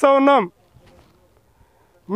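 A man's voice talking, breaking off about half a second in, then a pause of near silence with only faint background.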